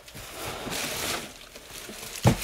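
Rustling noise close to the microphone, swelling for about a second and then dropping away.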